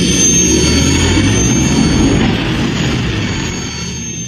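Sci-fi spaceship engine sound effect: a loud, steady rumble with a thin high whine over it, easing off near the end.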